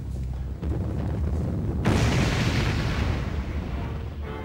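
A low, steady rumble, then a sudden loud bomb blast about two seconds in that dies away over a second and a half.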